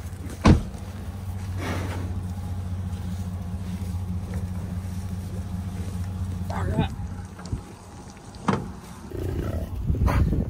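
A vehicle engine idling steadily, with a sharp thud about half a second in. A brief pitched sound comes near seven seconds and a click a little later, as the engine hum fades.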